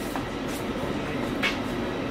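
Steady mechanical background hum with two faint clicks about a second apart.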